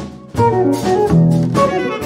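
Live jazz: a saxophone playing a melodic line over plucked double bass. After a brief dip at the start, the saxophone comes back in about a third of a second in with a run of short held notes.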